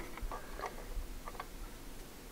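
Several light, sharp clicks and taps of small CPU-cooler mounting parts being handled and set in place on a motherboard.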